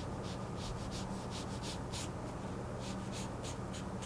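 Flat paintbrush loaded with acrylic paint brushed across paper in quick short strokes, a dry scratchy swish with each stroke, about a dozen of them at an uneven pace, the strongest about two seconds in.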